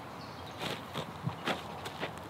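A few light steps scuffing on sandy gravel ground: four short sounds in under a second, near the middle.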